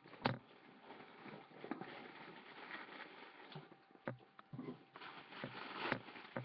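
Packaging being handled and opened by hand: steady rustling and crinkling with a sharp tap near the start and a few knocks later, growing louder toward the end.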